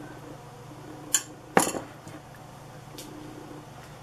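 A utensil clinking against the rim of a glass mixing bowl as thick semolina porridge is knocked off it: two sharp clinks about half a second apart, the second louder, and a fainter tap near the end, over a low steady hum.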